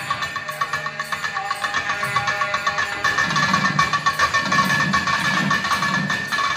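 South Indian temple ensemble of nadaswarams and thavil drums (periya melam) playing: the nadaswarams sustain high reedy notes over a quick thavil rhythm. About halfway through the drumming grows louder, with heavier low strokes.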